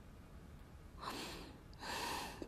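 Two soft breaths, about a second in and again near the end.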